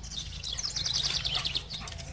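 A small songbird singing a rapid series of high chirps that falls slightly in pitch, starting about half a second in, over a low rumble.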